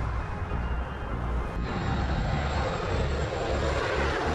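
F-117 Nighthawk's twin turbofan engines on a low approach with gear down, a jet rush that builds as the aircraft comes overhead near the end. A low, repeating musical bass line sits underneath.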